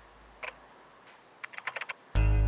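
Computer keyboard keystrokes: a single key click about half a second in, then a quick run of about six keystrokes near the end.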